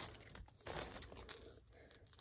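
Faint crinkling and rustling of small earring display cards and their packaging being handled, in a few short brushes.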